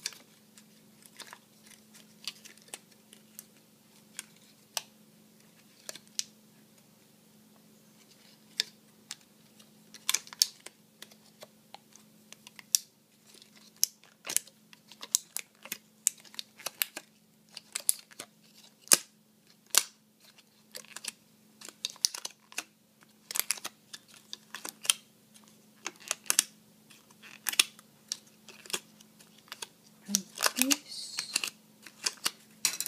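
Thin plastic bottle petals clicking and crackling as they are bent and curled with a wooden chopstick. The clicks come irregularly, sparse at first and much more frequent from about ten seconds in, over a faint steady hum.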